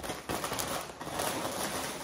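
Thin plastic shopping bag rustling and crinkling as a hand rummages inside it.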